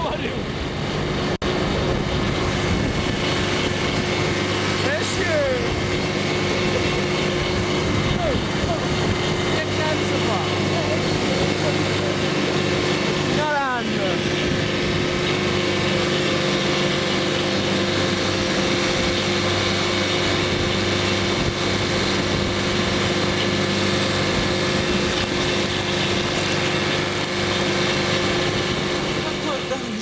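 Vehicle engine running at a steady, unchanging pitch, heard from on board while driving.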